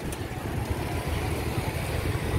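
Low, uneven rumble of outdoor background noise.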